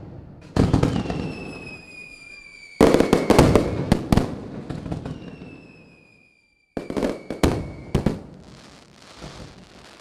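Fireworks: three volleys of bangs and crackles, about a second in, near three seconds and near seven seconds, each dying away, with a long, slowly falling whistle between them.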